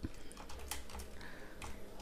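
Typing on a computer keyboard: a handful of separate, fairly faint key clicks, unevenly spaced.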